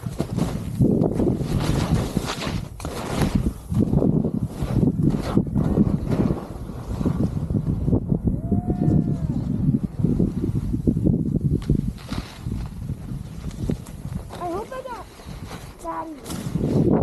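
Skis scraping and sliding over snow in a run of turns, swelling and fading with each turn, over a low wind rumble on the camera's microphone. A faint, high, wavering voice-like sound comes briefly about halfway through and again near the end.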